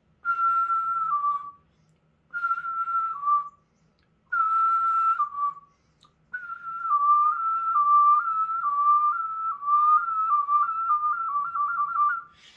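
A person whistling the beatbox 'recorder whistle', switching between a normal whistle and a whistle with the tongue raised against the roof of the mouth, which gives the pitch change. First come three short whistles, each stepping down from a higher note to a lower one. Then one long unbroken whistle flips back and forth between the two notes, faster toward the end.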